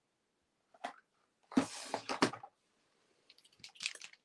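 A short hissing burst with a few knocks about a second and a half in. Near the end, an Artistro acrylic paint marker being shaken, its mixing ball clacking inside in a quick run of clicks as the paint is mixed.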